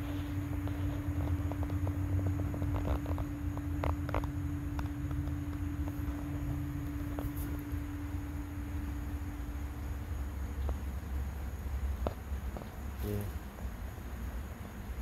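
Outdoor background: a low rumble with a steady hum that stops about eleven seconds in, and scattered light clicks and taps.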